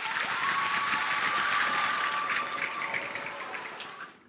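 Audience applauding: dense clapping that starts at once and fades away gradually toward the end.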